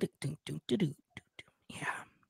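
Soft, partly whispered speech in short broken fragments.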